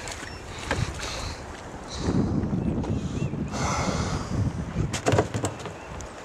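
Wind rumbling on the microphone on a kayak on the river, louder from about two seconds in, with a few sharp knocks near the end.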